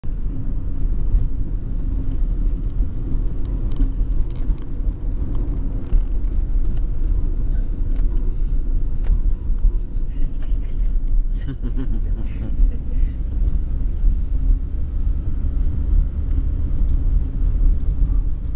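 A car's engine and tyres heard from inside the cabin while driving: a steady low rumble.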